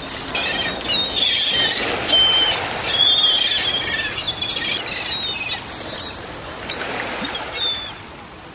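Many small songbirds chirping and singing at once, a dense chorus of short, overlapping high calls and trills that fades down near the end.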